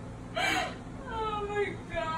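A woman gasps, then lets out a long, high whimper that falls slightly in pitch, overcome with emotion at a surprise.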